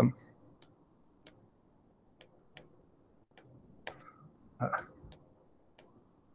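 Stylus tapping and clicking on a tablet's glass screen during handwriting: a series of faint, irregular clicks, about one every half second to second.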